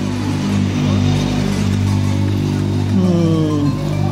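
A motorcycle engine running in the street, its pitch sliding down about three seconds in, over music and voices from the bars.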